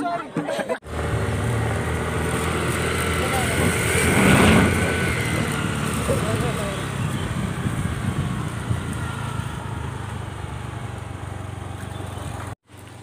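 Motor scooter running steadily on the move, its low engine hum under rushing wind noise on the microphone. The noise swells loudest about four seconds in, then eases off.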